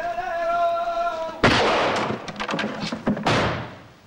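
A long held sung note with a slight waver is cut off about a second and a half in by a sudden loud crash, followed by a quick run of sharp cracks that fade away.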